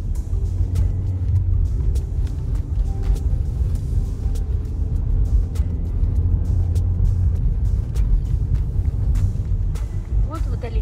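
Steady low rumble of a car's engine and tyres on the road, heard from inside the moving car's cabin, with faint music underneath.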